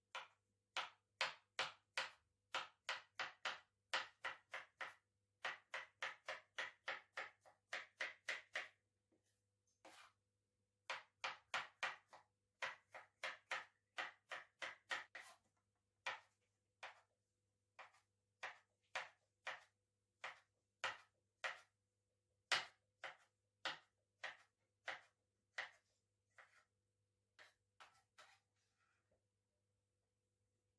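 Kitchen knife cutting tomato on a cutting board: quick, even runs of about three cuts a second for the first nine seconds and again from about eleven to fifteen seconds, then slower, spaced strokes until near the end.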